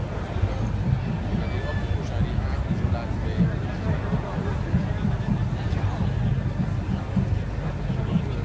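Outdoor crowd of spectators chatting in the background, over a steady low rumble with wind on the microphone.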